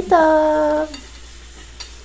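A woman's voice drawing out the last syllable of "bon appétit" on one steady pitch for most of a second, then low room noise with a faint click near the end.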